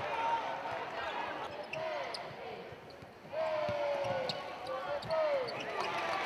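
Basketball players' sneakers squeaking on a hardwood court in short, gliding squeals, with the ball bouncing now and then. It all grows louder again at about three seconds in.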